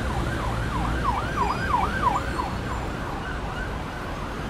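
Electronic siren in a fast rising-and-falling yelp, about three sweeps a second, swelling and then fading away, over a steady low rumble.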